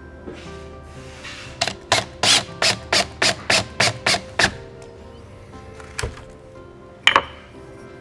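A 20V cordless drill driving a screw through a magnet into the end grain of a wooden leg: the motor runs briefly, then comes a string of about nine short bursts, roughly three a second, as the screw is pulsed home. A click and a sharp knock follow near the end.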